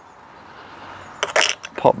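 A brief metallic clink and jingle about a second in, as the steel twisted-wire brush head and its metal fittings are handled onto the brush cutter's shaft.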